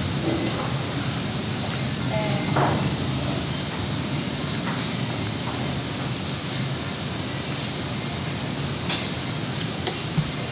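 Steady restaurant room noise, a hiss over a low hum, with a few light clicks of metal serving tongs against steel buffet trays.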